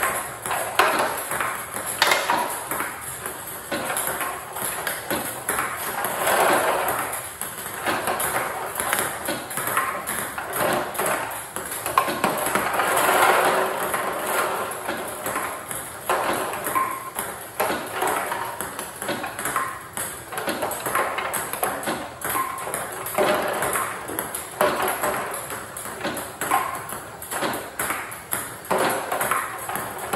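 Table tennis balls clicking repeatedly off a paddle and the table in quick succession during a topspin-return practice drill.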